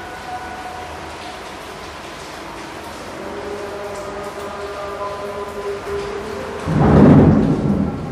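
Played-back recording of a space shuttle launch: a steady rushing roar with faint held tones, swelling into a loud, deep rumble near the end.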